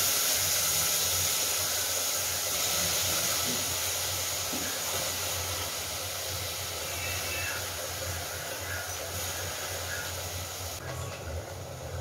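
Steady hiss from a pot of coconut-milk rice boiling on a gas stove under a steel plate used as a lid, easing off slightly and stopping suddenly about a second before the end.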